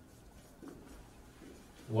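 Marker pen writing on a whiteboard: faint, short scratching strokes as a word is written out.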